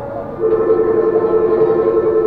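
Electronic signal tone on the monorail at its station stop: two steady notes sounding together, starting about half a second in and held for about two seconds.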